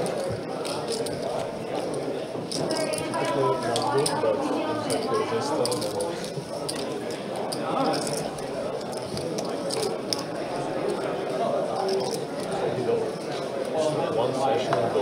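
Low chatter of voices around a poker table, with scattered sharp clicks of poker chips being handled and stacked.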